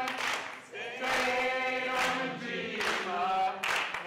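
A group of voices singing together unaccompanied in sustained phrases, with hand claps keeping a steady beat.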